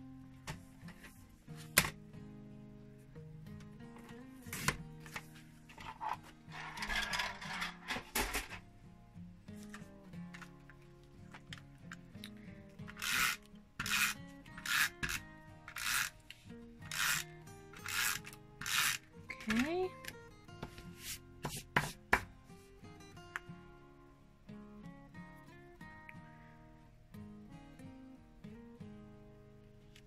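Background music under paper-crafting handling sounds. About six seconds in comes a scraping slide, typical of a paper trimmer's blade cutting through cardstock. From about twelve seconds a run of short rubbing strokes follows, roughly one a second, as card layers are handled and pressed.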